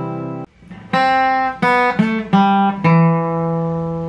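Steel-string acoustic guitar being played. A ringing note cuts off about half a second in; then five notes are struck at changing pitches over about two seconds, and the last is left to ring out.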